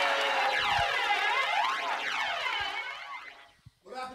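A DJ's mixer effect at the end of a set: a swirling, sweeping sound that glides down and back up in pitch again and again, fading out to silence about three and a half seconds in.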